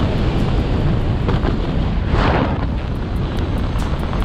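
Wind noise on the camera microphone during a parachute descent under an open canopy: a steady, low rush with a brief louder hiss about two seconds in.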